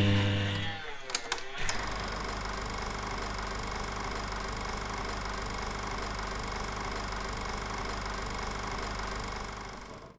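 Film projector sound effect: a low tone fades out in the first second, a few clicks follow, then a steady mechanical whirr and fast clatter that cuts off suddenly at the end.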